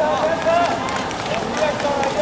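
Water polo players splashing as they swim hard across the pool, with voices calling out in long shouts over it.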